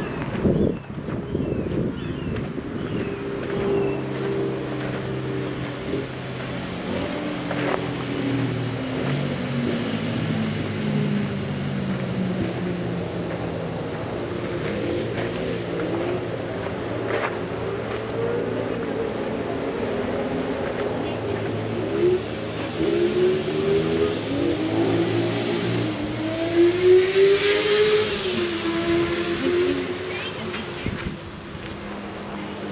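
An engine runs throughout, its pitch slowly sliding down and up as the revs change, with a few sharp clicks along the way.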